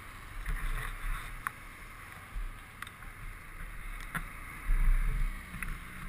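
Can-Am ATV engines idling: a low, uneven rumble with a few faint clicks and a brief swell about five seconds in.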